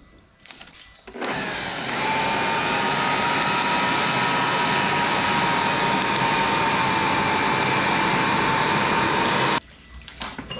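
Electric air blower forcing air into a small brick forge to bring a knife blank to forging heat: it switches on about a second in, runs loud and steady with a faint whine, and cuts off suddenly near the end.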